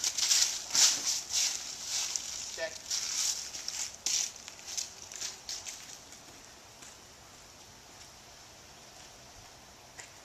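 Footsteps crunching and rustling through dry fallen leaves, a run of irregular steps over the first five seconds. The steps then stop, leaving only faint steady outdoor background.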